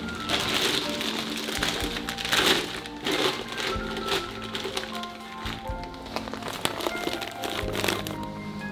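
Background music, over the crinkling rustle of a thin plastic bag being pulled down over a pot. The rustling is loudest in the first half.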